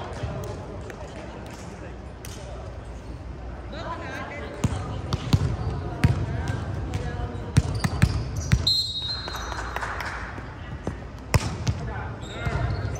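Players' voices in a large gym, with a string of sharp knocks of a volleyball hitting the hardwood court from about four seconds in. A brief high sneaker squeak comes past the middle.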